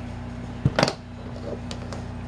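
Two quick knocks close together a little under a second in, handling noise as the camera is moved, over a steady low hum.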